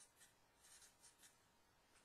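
Faint scratching of a felt-tip marker writing on paper, a few short strokes.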